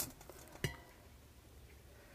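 Two short clicks of a utensil knocking against eggs in a stainless steel pressure-cooker pot as they are scooped out, the second, louder one a little over half a second in, then only faint room noise.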